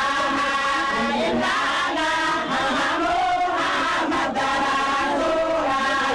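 A group of voices chanting a song together, with held and gliding notes and no break.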